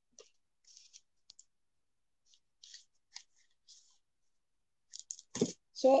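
Faint, scattered scratchy rustles and small clicks of hands handling a plastic glue bottle and newspaper, with louder sharp paper rustles about five seconds in.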